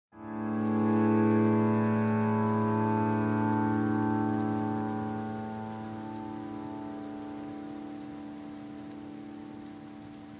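Ambient music: a held chord of many steady tones that swells in over the first second and then slowly fades away, with faint scattered crackles like raindrops above it.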